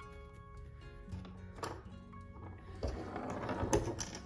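Soft background music with steady tones, and near the end a short stretch of rustling and light tapping from hands handling fabric and a small tool.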